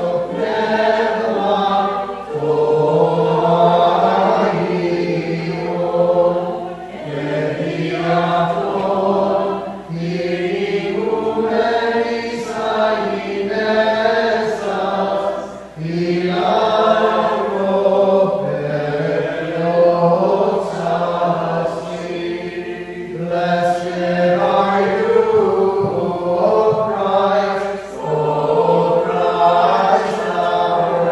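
Unaccompanied Byzantine liturgical chant sung by several voices. It moves in long sung phrases with held notes, and each phrase is parted from the next by a brief pause for breath.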